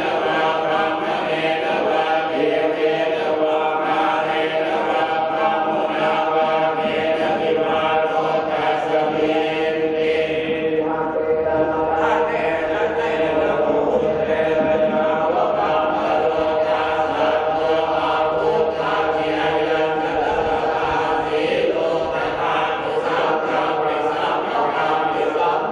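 Buddhist monks chanting together in unison, a continuous steady drone of several male voices with no pauses.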